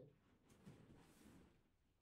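Near silence: faint room tone with a soft rustle of gi cloth and bodies moving on the mat.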